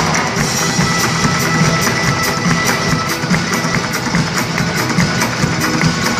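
A rock band playing live and unplugged, an instrumental passage: acoustic guitars over a steady drum beat.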